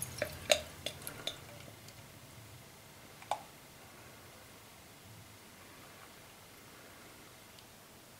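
Stout poured slowly from a glass bottle into a tilted stemmed glass, faint throughout, with several light clinks and clicks of glass in the first two seconds and one more about three seconds in.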